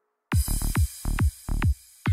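Psytrance from a DJ set cutting in abruptly after a moment of silence: heavy electronic kick drums, each hit dropping in pitch, in a driving rhythm with bright hiss over the top.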